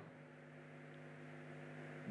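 Near silence: a faint steady electrical hum of a few even low tones.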